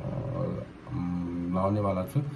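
A person's voice making drawn-out, held vocal sounds, like a hum or a long 'uhh', in two stretches with a short pause just after half a second in.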